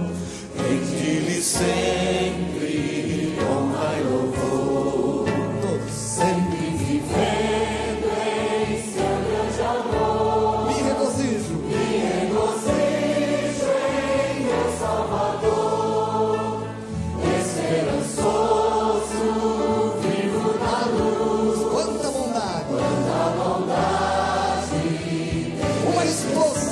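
Gospel worship song: male lead singers and a choir singing over held low accompanying notes, continuously and at an even level.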